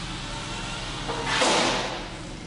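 RC helicopter rotor near the floor, with a sudden loud swishing rush about a second in that lasts under a second as the helicopter comes down onto the floor.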